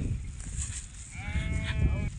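A sheep bleating once, a single call starting about a second in and lasting just under a second, over a low rumble.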